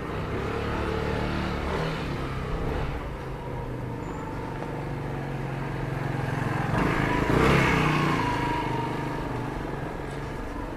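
A motor vehicle's engine passing close by, growing louder to a peak about seven and a half seconds in, then fading away.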